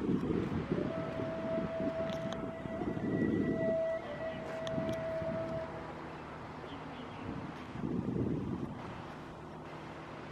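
A horn or siren sounding one long steady note for about five seconds, with a short break near the middle. Under it runs a low rumble of wind on the microphone and distant traffic.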